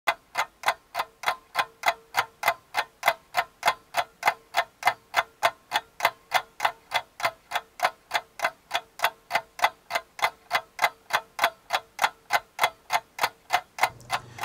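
Clock ticking steadily and quickly, about three ticks a second, with a faint steady tone underneath that stops a little before the end.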